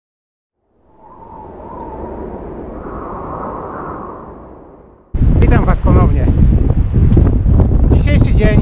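An intro sound under a logo swells up and fades away over about four seconds. Then, about five seconds in, it cuts suddenly to heavy wind buffeting a small action camera's microphone, a loud rumble.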